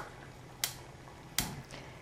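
Two sharp clicks, a little under a second apart, as a stove burner knob is turned on.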